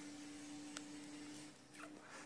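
Near silence: quiet room tone with a faint steady hum that stops about one and a half seconds in, and one faint click a little before the middle.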